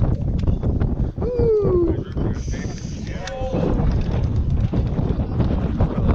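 Wind buffeting the camera microphone in a steady low rumble, with a few short voices talking over it.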